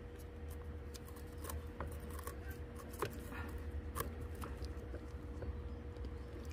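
Faint scattered clicks and rustles as latex-gloved hands push a plastic plant pin down into packed potting soil among fleshy succulent leaves. A faint steady hum runs underneath.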